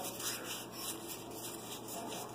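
Faint rubbing of Pokémon trading cards sliding against one another as they are fanned through by hand.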